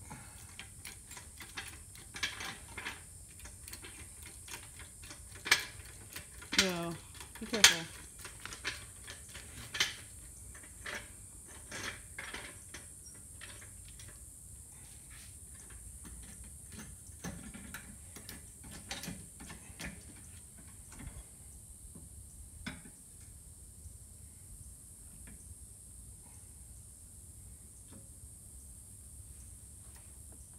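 Metal clicks, clanks and scrapes of a floor jack being set and worked under a car's front end, busiest and loudest about five to ten seconds in, sparser after. A short falling, pitched sound comes at about seven seconds in.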